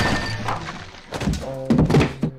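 A heavy thud sound effect right at the start that rings out briefly, then a few sharp knocks about a second in, with music underneath.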